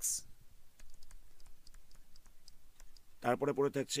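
Faint, irregular light clicks of computer input gear, a few a second; a man's voice starts near the end.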